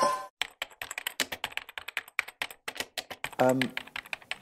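Fast, irregular clicking of a laptop keyboard being typed on, several keystrokes a second, going on without a break.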